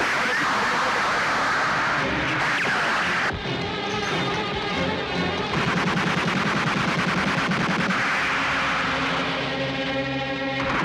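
Dramatic film score over a gunfight, with gunshots. About halfway through, a long run of rapid, evenly spaced shots begins, like machine-gun fire.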